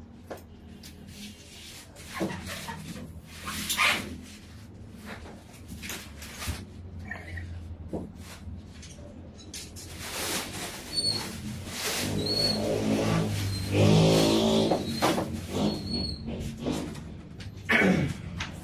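Handling noise from an unplugged Stratocaster-style electric guitar being turned over in the hands: scattered knocks, rubs and light string noise. In the middle, a louder pitched, wavering sound lasts about three seconds.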